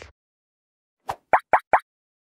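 Logo-animation sound effects: four quick pops, each rising in pitch like a bloop, coming about a fifth of a second apart just past the middle, the first softer than the rest. At the very start is the fading tail of a falling whoosh.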